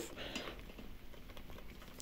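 Faint handling noise with a few small ticks: the rubber-sheathed waterproof plug of an e-bike kit's cable being wiggled and pushed by hand into its mating connector.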